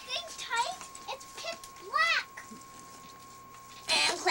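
Domestic cat meowing: a few short meows, then one longer meow that rises and falls about two seconds in.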